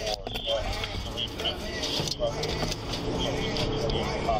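Patrol car driving, with engine and road noise heard from inside the cabin.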